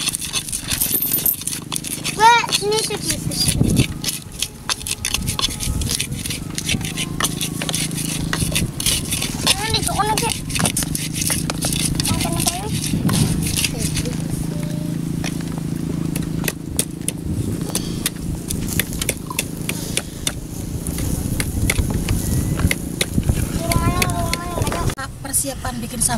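Pestle grinding and tapping chilies in a cobek mortar for sambal: many short clicks and scrapes, with a steady low hum underneath.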